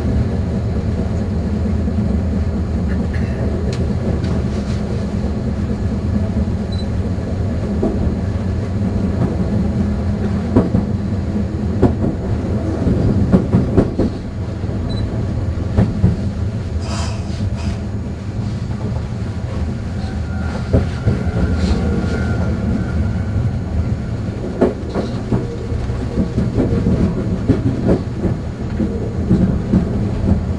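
Meitetsu 7000 series Panorama Car electric train running, heard from inside the front car: a steady low rumble of the running gear with scattered clacks of the wheels over rail joints. A faint steady whine sounds for a few seconds past the middle.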